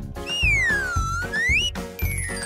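Upbeat background music with a steady beat, over which a whistle sound effect glides down in pitch and then back up in one smooth swoop, ending near the end.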